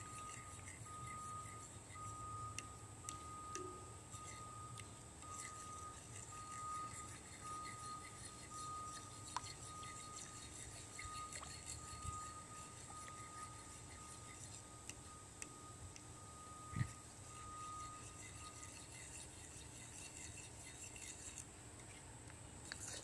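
Faint scrapes and light clicks of a fork stirring milk gravy in a metal skillet, working out the lumps as the gravy thickens. A faint high tone pulses on and off behind it and stops a few seconds before the end, and there is a single soft thump about three-quarters of the way through.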